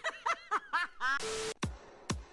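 A quick run of high giggling laughter, several short bursts in the first second, then an electronic music sting: a burst of hiss with a held tone, followed by a deep kick drum near the end.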